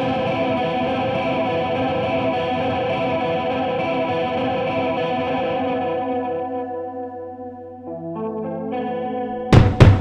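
Black/death metal recording, instrumental: a held guitar chord with chorus and distortion effects rings out and slowly fades, then single guitar notes are picked from about eight seconds in. Two loud hits come near the end.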